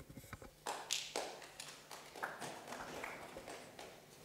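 Scattered light taps, knocks and rustles of a handheld microphone being handled and passed from one person to another, quiet throughout, the sharpest rustle about a second in.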